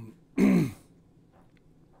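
A man clearing his throat once, a short loud rasp about half a second in that drops in pitch.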